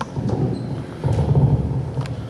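Microphone handling noise: low rumbling and bumping in two swells, starting with a sharp knock.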